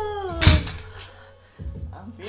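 A woman's drawn-out, falling groan of exertion at the end of a triceps set, with a loud sharp thunk about half a second in.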